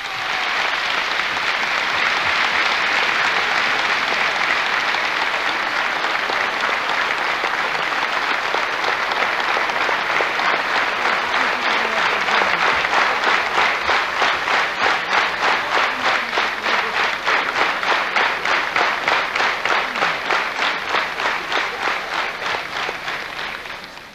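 A large audience applauding; about halfway in, the clapping falls into a steady rhythm in unison, about three claps a second, and it fades away at the very end.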